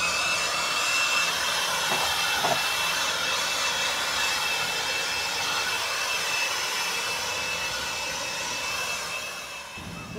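DeWalt cordless handheld leaf blower running steadily, a rushing of air with a steady high whine, as it is swept over a concrete pad. It fades out just before the end.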